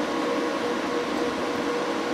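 Growatt 5000ES off-grid inverters running under load: a steady fan whir with a constant mid-pitched hum.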